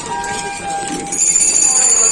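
Busy market street ambience with passers-by talking, a steady horn-like tone in the first second, then a shrill, high, steady tone that starts about a second in and is the loudest sound.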